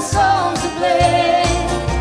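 Live acoustic country band music with a sung vocal over bass and drums.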